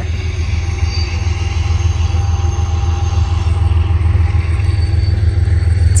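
Train running on the rails, heard as a deep, steady rumble.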